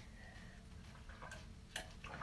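Very quiet room tone while a woman drinks from a tumbler, with faint soft ticks of sipping and swallowing and one slightly clearer click near the end.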